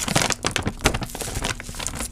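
Glossy plastic bag of bone meal crinkling as it is handled and turned over, a dense run of crackles throughout.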